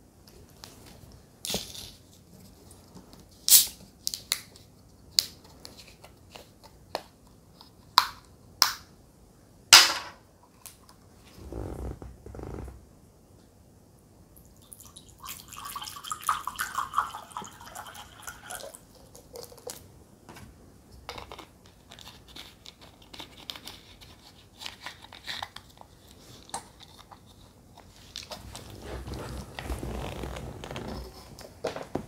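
A series of sharp clicks and crackles from a plastic water bottle being handled, then water poured from the bottle into a ceramic cup for a few seconds about halfway through.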